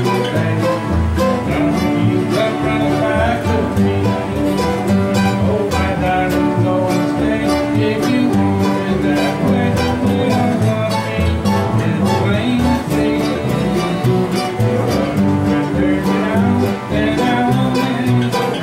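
Acoustic guitars playing a country tune together, strummed in a steady rhythm.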